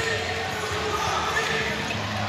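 Basketball dribbled on a hardwood court under the steady chatter and calls of an arena crowd.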